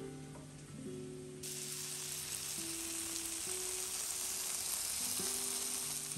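Shrimp coated in a sticky sauce sizzling and frying in a hot non-stick pan. The sizzle turns loud about a second and a half in, over soft acoustic guitar music.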